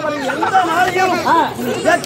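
Speech only: voices talking, with several voices overlapping at times.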